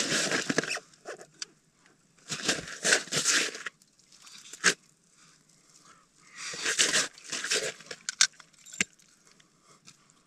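Boots crunching on snow and slushy ice in three short bursts, with a few sharp clicks between them.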